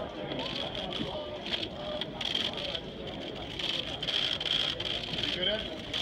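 Chatter of a crowded room: many voices talking at once with no clear words, and a few short clicks.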